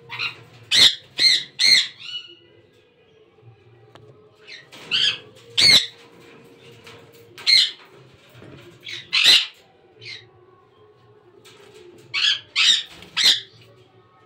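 Sun conures giving short, loud, shrill squawks in small clusters: three in quick succession in the first two seconds, several more spaced through the middle, and another quick three near the end.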